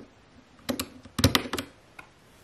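Round plastic keycaps of a mechanical keyboard being handled and clicking against each other and the keyboard. There are two or three clicks just under a second in, then a louder quick cluster of clicks a little past the middle.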